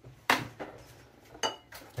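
Ingredient containers handled on a kitchen counter: a knock about a quarter second in, then a short clink with a brief ringing tone about one and a half seconds in, as a spice tin is put away and a glass sauce bottle is picked up.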